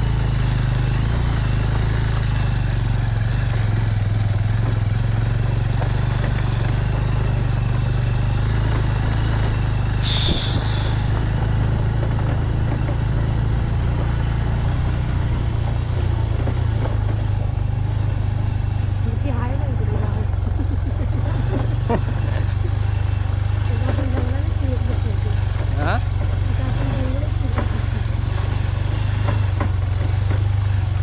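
Small motorcycle engine running steadily at low revs while riding a rough dirt track, with a brief hiss about ten seconds in.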